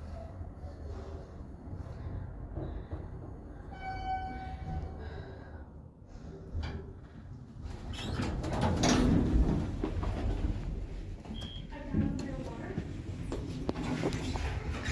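Dover elevator (Sterling modernisation) car running with a low hum. A single arrival chime tone sounds for about a second, four seconds in. From about eight seconds the sliding car and landing doors open with a loud run of the door operator, and a click follows near the end.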